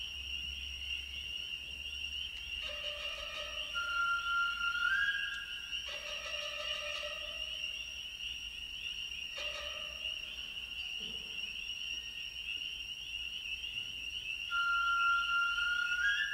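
A recorded chorus of spring peepers, a dense high peeping throughout, with held instrumental tones entering and fading every few seconds. A high, slightly rising tone sounds about four seconds in and again near the end.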